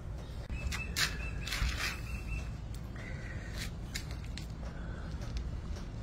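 Quiet outdoor background: a steady low rumble with scattered soft clicks and a few faint, short high chirps.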